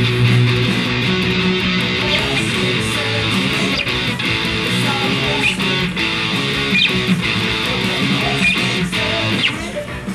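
Electric guitar playing a repeating rock chord part along with the band's recording, with bass and drums underneath.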